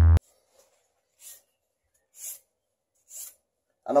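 Electronic music cuts off right at the start. Then come three faint rasping strokes about a second apart: a knife blade scraped across an anti-cut protective arm sleeve.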